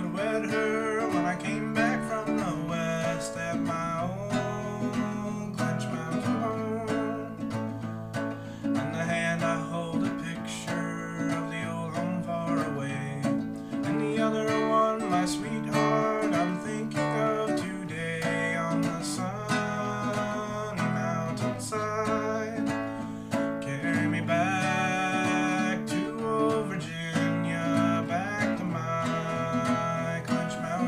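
Acoustic guitar playing an instrumental break in an old-time country song, with melody notes picked among strummed chords and no singing.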